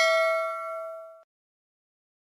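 Bell-like ding sound effect for a notification-bell button being clicked. It rings with several tones together, fades, and cuts off suddenly just over a second in.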